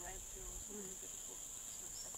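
Faint, steady high-pitched drone of insects in the background ambience.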